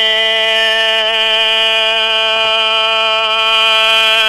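A singer holding one long note of Hmong kwv txhiaj sung poetry, unaccompanied, steady in pitch with a slight waver.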